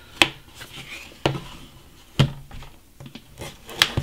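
A small blade slitting the tamper-seal stickers along the edge of a cardboard phone box, with handling rustle and four sharp taps as the box and blade knock about. The loudest tap comes a little over two seconds in.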